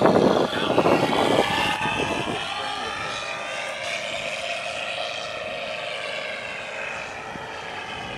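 Electric RC model P-51 Mustang flying past. Its motor and propeller whine mixes with the onboard sound module's simulated piston-engine sound, and the pitch drifts up and then down as the plane passes. It is loudest in the first second or so and eases off slightly toward the end.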